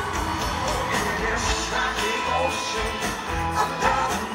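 Live rock band playing a Latin-rock song with a steady beat and singing over it, recorded from the audience in a large hall.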